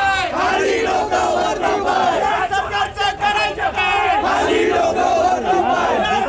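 Crowd of protesters shouting slogans, many voices overlapping, loud and continuous.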